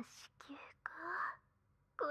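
A woman's breathy, whispered vocal sounds and soft moans close to the microphone, in short bursts with one longer breath about a second in.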